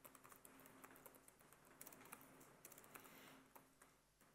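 Faint typing on a computer keyboard: irregular runs of quick key clicks as a short command is typed.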